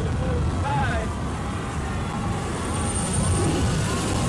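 A steady low rumble with a voice faintly heard over it, and a brief thin high tone in the middle.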